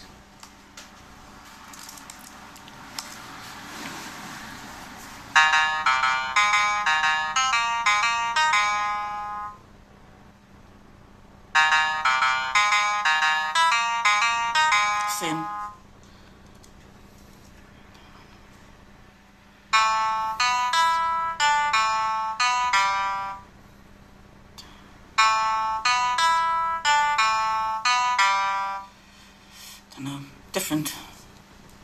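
Two pairs of short tunes played back for a same-or-different melody test used to detect amusia. There are four runs of about ten quick pitched notes each; the two tunes of a pair come a couple of seconds apart, with a longer pause between the pairs.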